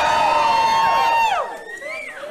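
Crowd whooping in answer to a call from the stage: several voices hold a high "woo" together for about a second and a half, then drop off, followed by one shorter rising-and-falling whoop near the end.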